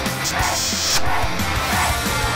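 Upbeat theme music with a steady, driving beat.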